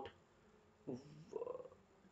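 A brief pause, then about a second in a faint, low murmur from the lecturer's voice, like a quiet hum or a half-spoken sound before he resumes talking.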